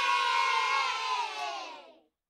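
A crowd of children cheering together, many voices at once, fading away near the end.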